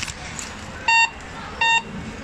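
Cash deposit machine beeping: two short, identical electronic beeps, the first about a second in, repeating at an even pace of roughly one every 0.7 seconds.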